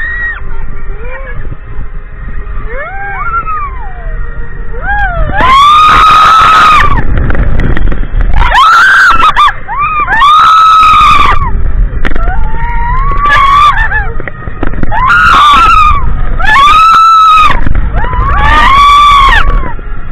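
Riders screaming on a spinning roller coaster: a string of long, high screams, each about a second, starting about five seconds in after some shorter yells. Under them runs a steady low rumble of wind on the microphone and the car running on the track.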